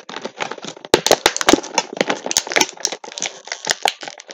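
Clear plastic figure packaging crinkling and crackling as it is handled, with a quick, irregular run of sharp clicks and snaps.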